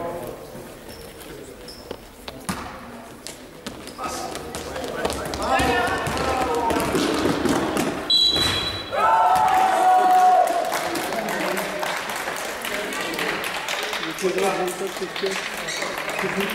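Basketball game in a gym hall: a ball bouncing on the court among players' and spectators' shouting, loudest about nine to ten seconds in. A short high tone sounds just before that loud shouting.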